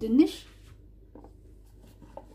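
A person's voice saying one short word, rising in pitch, then quiet room tone with a single faint click about a second in.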